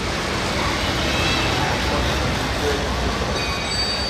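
Velodrome ambience: a steady low rumble and hiss with distant, indistinct voices.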